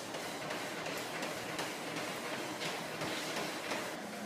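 Treadmill running steadily with a faint, even rhythm.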